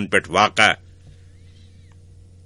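A man's voice speaking for under a second, then a pause holding only a faint steady hum.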